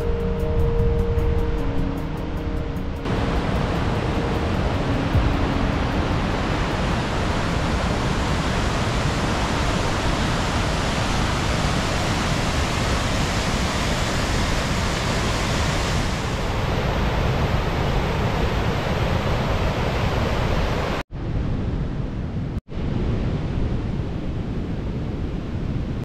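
Whitewater river rushing over granite slabs: a steady, loud rush of water. It cuts out sharply twice near the end.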